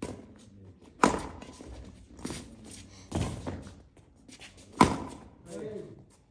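Badminton rackets striking a shuttlecock in a rally: five sharp hits, each about a second or so apart. A short shout follows near the end.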